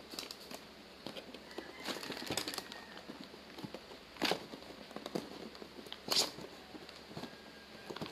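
A cardboard product box being handled and worked open by hand: scattered rustling, scraping and light clicks, with two sharper taps about four and six seconds in.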